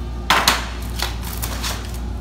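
Empty black plastic milk crate set down with a loud clatter onto other crates on a wooden pallet, followed by a few lighter knocks as the crates are shifted into place.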